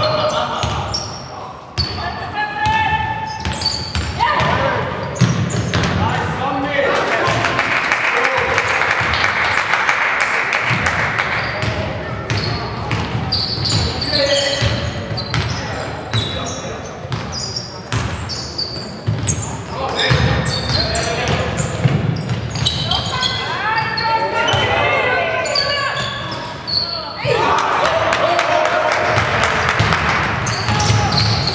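Basketball game play in a sports hall: the ball bouncing on the hardwood court amid players' shouts and calls, echoing in the large room, with two louder, noisier stretches about eight seconds in and near the end.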